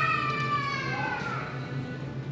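A high-pitched wailing voice in long drawn-out notes that slowly fall in pitch and die away partway through, over a steady low hum.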